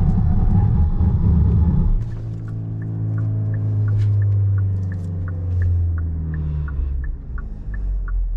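Hyundai Alcazar under hard braking from 100 km/h, heard from inside the cabin: loud road and tyre rumble that cuts off abruptly about two seconds in as the car stops. A steady hum follows, with a regular tick about three times a second.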